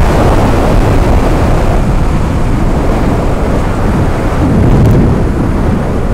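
Heavy wind noise buffeting the microphone, with a sport motorcycle running at highway speed. The hiss thins after about two seconds as the bike slows.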